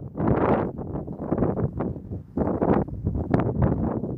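Wind buffeting the microphone in irregular gusts, with short dips between them.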